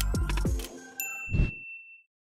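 Short electronic music sting with falling bass tones, then about a second in a single bright bell ding that rings out, from a subscribe-button notification animation.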